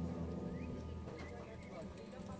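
Symphonic wind band's held chord fading out about a second in, leaving a short pause filled with faint chirps and clicks.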